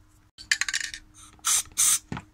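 Aerosol spray paint can: a cluster of sharp rattling clicks from the can being shaken, then two short hisses of spray near the end.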